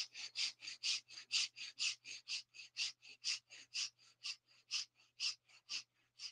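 Quick, short breaths pushed through both nostrils in a steady rhythm of about four a second, a rapid yogic breathing exercise.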